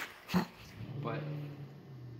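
A man's voice: a drawn-out "but…" held on one low pitch and trailing off, just after a short sharp knock.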